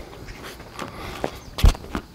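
A tennis player's footsteps on a hard court, broken by several sharp knocks of a tennis ball, the loudest about one and a half seconds in.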